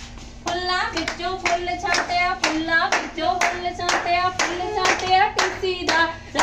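Hand-clapping game: regular sharp hand claps, roughly two to three a second, starting about half a second in, with voices singing a short repeating rhyme over them.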